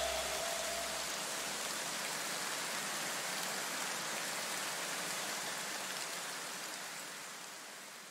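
A steady, even hiss that fades out gradually near the end. In the first two seconds the last low notes of the background music die away under it.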